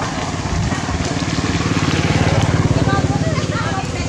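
A small engine running with an even low pulse, building up to a peak two to three seconds in and then easing off, as if passing by. Short high squeaks start about three seconds in.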